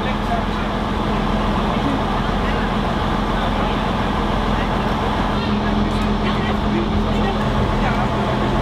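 Diesel engine of the NS 41 'Blauwe Engel' diesel-electric train idling at a standstill: a steady low hum, with people talking nearby.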